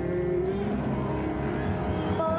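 Live jazz combo playing: piano, bass and drums under a long held lead note that slides downward and ends about half a second in, with a new melodic line starting near the end.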